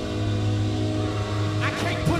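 Gospel worship music: a sustained chord with a steady low bass note is held, and a man's singing voice comes in near the end.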